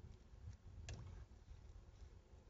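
Near silence with one faint click about a second in: a metal spoon knocking the frying pan while stirring fideo noodles in tomato sauce.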